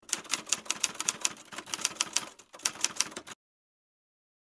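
Typing sound effect: a rapid, uneven run of key clicks as on-screen text is typed out, stopping suddenly a little over three seconds in.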